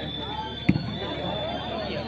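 Crowd chatter at a volleyball match, with one sharp smack of a ball being struck about two-thirds of a second in.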